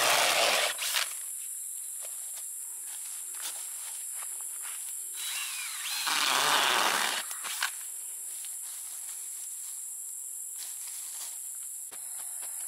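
A handheld power drill with an auger bit boring holes into garden soil, in two short runs: one right at the start and one about six seconds in, with its motor pitch rising as it spins up.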